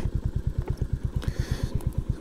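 Royal Enfield Classic 350's single-cylinder engine running at low revs in an even chug of about a dozen beats a second, as the bike is turned around at walking pace.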